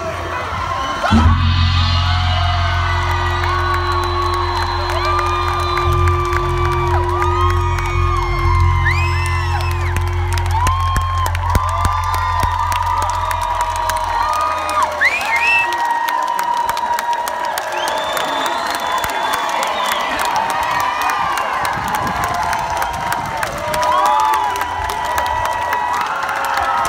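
A rock band's closing chord held and ringing out for about fourteen seconds, with a crowd cheering and whooping over it; after the chord stops, the crowd's cheering and shouts carry on.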